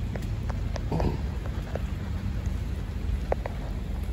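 Light rain falling outdoors, with scattered drops ticking on wet surfaces over a steady low rumble.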